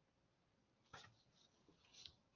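Near silence: faint room tone, with a faint brief sound about a second in and another near the end.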